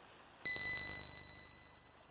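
A single high, clear bell-like ding, struck once about half a second in and ringing out as it fades over about a second and a half.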